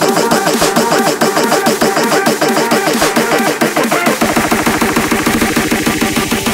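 Instrumental build-up of a hardcore electronic track: a fast, machine-gun-like run of repeated pitched synth stabs and drum hits. About four seconds in the hits grow denser as a low bass layer comes in.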